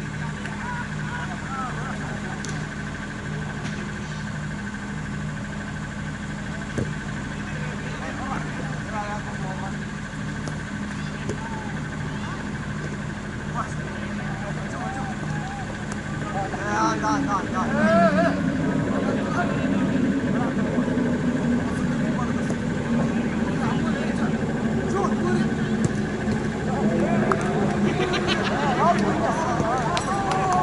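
Players' voices calling out across a cricket field over a steady mechanical hum; the voices grow louder and busier a little past halfway.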